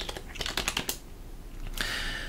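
Computer keyboard keystrokes: a quick run of key presses over about a second as a password is typed in, followed by a soft hiss near the end.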